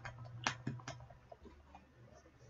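A few sharp clicks and knocks as a bottle of thick hot sauce is shaken, the loudest about half a second in, then fainter ones dying away.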